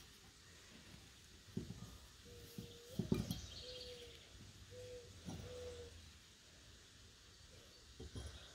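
A bird's call of four low, steady hoots, all at the same pitch, over about three seconds. A few soft knocks come as a glass wine glass is handled and set down on a wooden table, the loudest about three seconds in.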